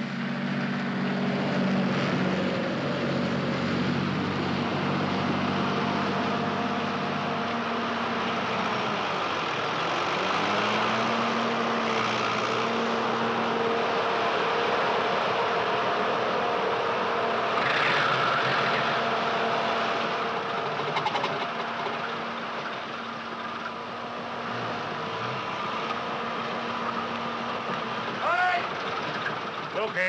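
Lorry engine running steadily; its pitch drops about nine seconds in and then picks up again.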